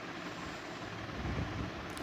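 Steady low background rumble with faint hiss, swelling slightly past the middle.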